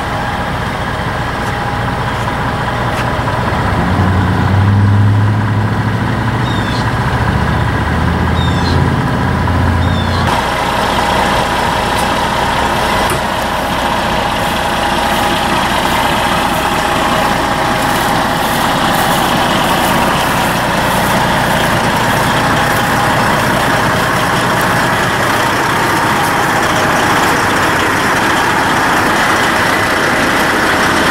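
Semi tractor's diesel engine idling steadily. From about four to ten seconds in, a deeper, louder rumble joins it and cuts off sharply, leaving a steady running sound with more hiss.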